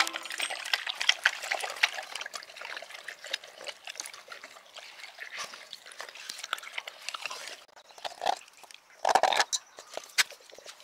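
A large pit bull–mastiff mix dog lapping water from a stainless steel bowl, a quick run of small splashing laps. The lapping thins out after about seven seconds, and a few louder bursts come near the end.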